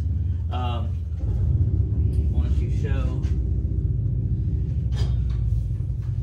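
A steady low drone that steps up in level about a second in, with a few muttered words over it and a single knock about five seconds in.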